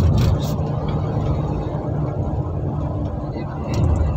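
Steady low rumble of road and engine noise inside a vehicle driving along a highway.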